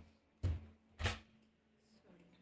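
Two short, dull thumps about half a second apart as a book is handled and knocked against a tabletop.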